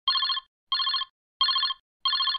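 A mobile phone ringing with a trilling ringtone, heard as three short bursts of rapid trill about 0.7 s apart.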